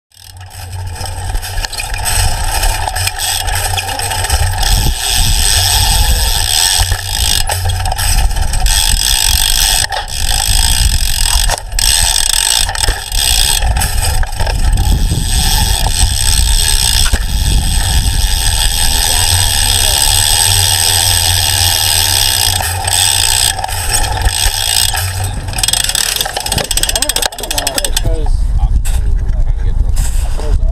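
Wind buffeting a handlebar-mounted action camera and the rolling noise of a BMX bike being ridden over concrete, loud and steady. About two seconds before the end the noise drops away and muffled voices come through.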